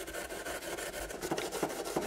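A Scotch-Brite abrasive pad scrubbed rapidly back and forth over the painted body shell of an RC crawler, a steady scratchy rubbing. The pad is wearing through the paint to bring up a weathered patina.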